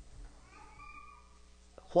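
A faint, high, wavering cry lasting about a second, starting about half a second in, in a quiet room. A man's voice begins a word right at the end.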